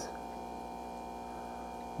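A steady electrical hum made of a few fixed tones, unchanging throughout.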